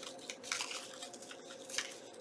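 Paper being torn slowly by hand around a marked circle, heard as a few faint, short tearing rips, the clearest about half a second in and another near the end.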